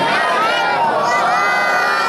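Many voices, men and children together, chanting a festive religious jalwa song unaccompanied, with long held, wavering notes.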